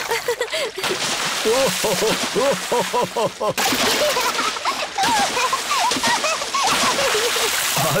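Cartoon sound effect of splashing in shallow sea water, with voices laughing in quick short bursts over it.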